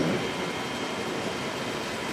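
A pause in speech: steady background noise with a faint, even hum and no distinct event.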